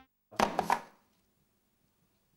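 Two used batteries dropped into a plastic-lined waste bin, landing with two quick knocks about half a second in.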